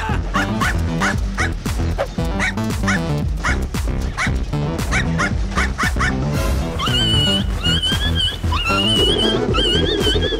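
Background music with a steady beat, over dog sound effects: a quick run of short yips, then drawn-out wavering whimpers from about seven seconds in.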